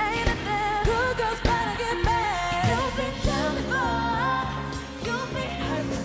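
Female pop vocal group singing live into microphones over a backing track with a steady beat and bass.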